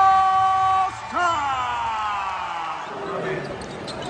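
A public-address announcer's drawn-out call over arena loudspeakers, ringing in the hall. One syllable is held on a steady pitch for about a second, then a second long call slides down in pitch over nearly two seconds.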